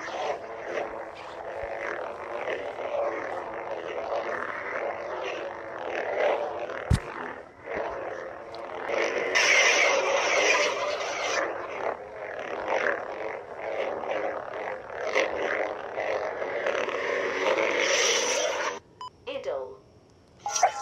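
SabersPro Revan replica lightsaber's Xenopixel V3 sound board playing a sound font through its speaker. It switches on at the start, then gives a continuous hum with swing swooshes as the blade is moved, louder around the middle and again near the end. It shuts off about a second before the end.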